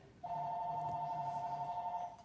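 A steady electronic beep of two pitches sounding together, lasting nearly two seconds and stopping sharply.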